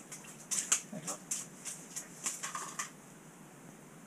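A freshly caught fish flopping on wet ice by the fishing hole: a quick run of short wet slaps and splashes for about three seconds.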